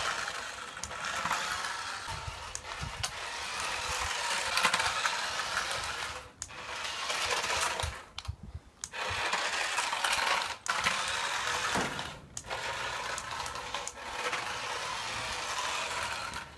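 Toy RC car's small battery-powered electric motor and gears whirring as it drives over concrete. The motor cuts out for brief pauses about four times as the throttle is let off.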